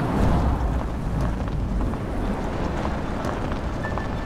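A steady rushing wind-like noise with a deep rumble underneath, starting suddenly, loudest in the first second and easing off slowly.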